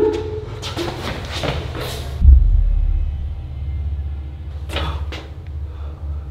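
Suspense film score: a steady low drone with one deep boom hit about two seconds in, and a few short noisy sounds early on and again near five seconds.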